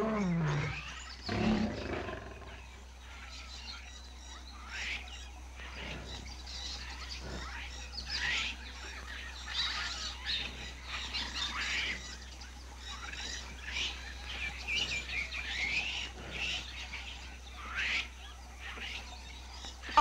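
A lion calls in two short bursts in the first two seconds. Then many short, rising bird chirps and calls follow one another, over a low steady hum.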